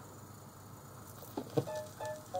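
Record player stylus running in the lead-in groove of a 1955 jazz 7-inch vinyl record: faint surface hiss and crackle, two sharp clicks, then the first notes of the music near the end.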